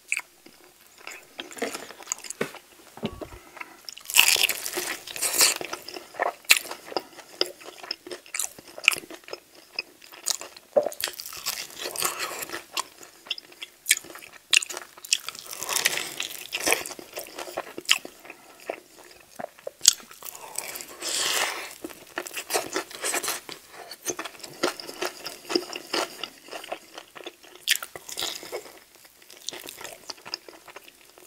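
Close-miked biting and chewing of sauced chicken wings, with meat pulled off the bone by hand. Many sharp clicks run throughout, with denser spells about four to seven seconds in, around the middle, and around twenty-one seconds.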